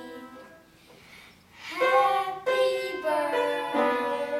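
Piano music: held notes fade out just after the start, and after about a second of near quiet the playing starts again.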